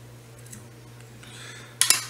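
Fly-tying scissors trimming a hair collar: faint rustling snips, then one sharp metallic click near the end, over a faint steady low hum.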